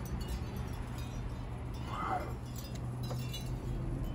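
Metal tube wind chime tinkling faintly, with a few light, high rings about three seconds in, over a steady low rumble.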